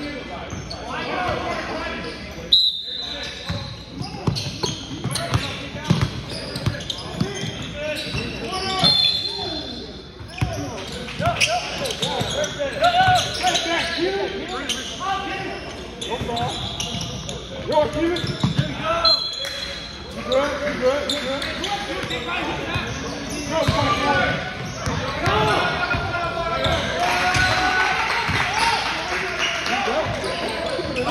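A basketball bouncing on a hardwood gym floor as players dribble, mixed with players' indistinct voices and calls echoing in a large gym. Three brief high-pitched tones cut through, a few seconds in, around the middle, and about two-thirds of the way through.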